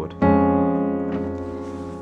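A C-sharp major chord over F (C#/F) on piano, with F in the bass and F, G-sharp and C-sharp above, struck once about a quarter second in and left to ring, fading slowly. It is a passing chord that leads back to F-sharp major.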